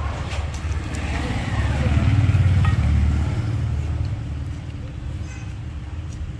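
Low rumble of a passing motor vehicle, swelling to its loudest about two to three seconds in and then fading.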